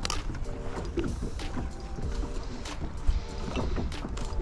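Small waves lapping against a small metal boat's hull with a low wind rumble, and scattered clicks and rustles of hands rummaging in a soft cooler bag and unscrewing an insulated food jar.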